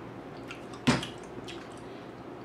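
Wet mouth sounds of sucking and smacking on sour lollipop candy, with small clicks and one sharper smack about a second in.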